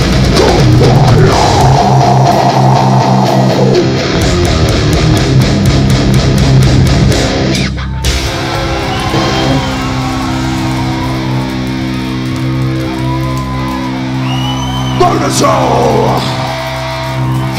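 Heavy metal band playing live: distorted electric guitars over fast, driving drums. About eight seconds in the music breaks off briefly, and then the guitars hold long ringing chords over sparser drum hits.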